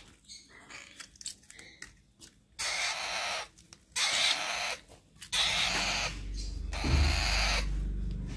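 Parrot chick making raspy begging calls while being hand-fed, in short bursts about 2.5 and 4 seconds in and a longer run from about 5 seconds on, with a low rumble under the last part.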